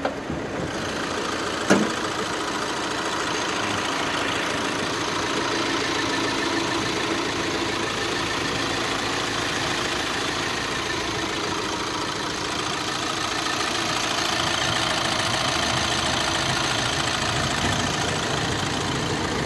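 A 2015 Volkswagen Crafter's 100 kW 2.0 TDI four-cylinder diesel idling steadily, heard with the bonnet open. It has about 200,000 km on it, and a Volkswagen service check found no engine problems. One short click comes about two seconds in.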